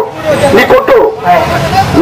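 A man speaking loudly, with crowd babble behind him.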